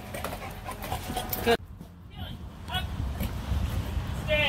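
A dog panting, with faint clicks and small sounds around it; the sound drops out abruptly about a second and a half in, at a cut.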